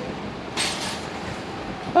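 A metal shopping cart rattling as it is pushed across the pavement and onto a curb, with a brief louder rattle about half a second in.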